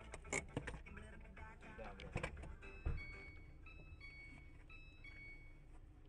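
A few faint clicks and knocks, then from about halfway through a short electronic tune of high beeping notes that step between a few pitches.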